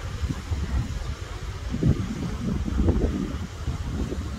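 Wind buffeting the phone's microphone as a continuous low rumble, with the ocean surf breaking on the rocks below underneath it.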